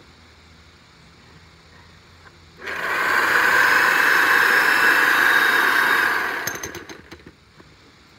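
Corded DeWalt electric jackhammer starting about two and a half seconds in and hammering its bit into soft soil for about four seconds, then running down with a few sharp clicks.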